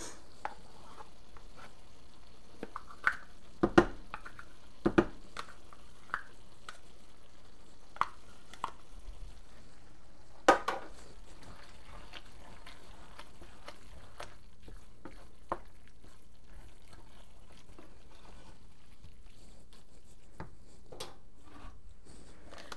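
Wooden spatula stirring sour cream into a skillet of cooked macaroni and ground beef, with soft squishing and a few sharp knocks of the spatula against the pan, the loudest about four, five and ten seconds in.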